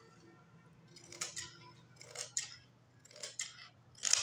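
Large tailor's scissors cutting through folded fabric: three cutting strokes about a second apart, each a quick run of crisp snips as the blades close.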